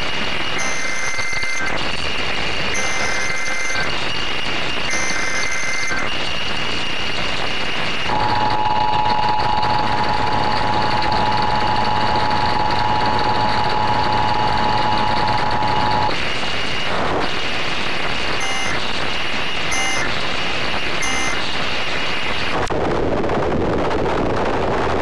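Emergency Alert System tornado-warning broadcast. First come three short bursts of the digital data header, then the two-tone attention signal held steady for about eight seconds, then three short end-of-message bursts. A constant hiss runs underneath.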